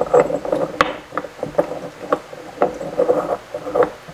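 Rough rocks being pushed and set down on the bare glass floor of an empty aquarium: a run of irregular clicks and grating scrapes, the sharpest about a second in.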